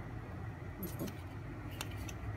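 Light metallic clinks of a steel spoon against a steel pan of rice dough, a few faint ticks around a second in and near the end, over a steady low hum.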